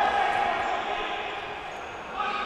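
Echoing sports-hall ambience of a handball court: faint distant voices and court noise, fading steadily quieter.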